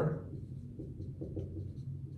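Dry-erase marker writing on a whiteboard: faint scratching strokes over a steady low hum.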